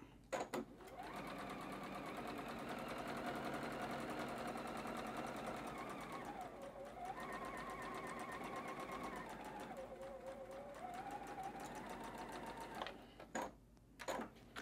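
Juki sewing machine running for about twelve seconds, stitching a narrow seam; its pitch dips and rises partway through as the sewing speed changes. Short clicks come just before it starts and just after it stops.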